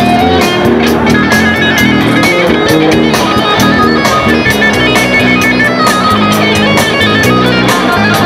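Electric guitar played loud in fast single-note lead runs, the notes stepping quickly up and down with rapid picking.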